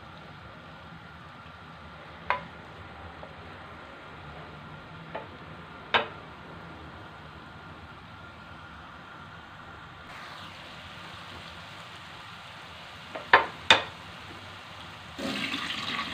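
Grated carrots sizzling steadily in butter and olive oil in a frying pan, with a few sharp knocks of a wooden spatula against the pan, two of them close together near the end. A louder rushing noise starts just before the end.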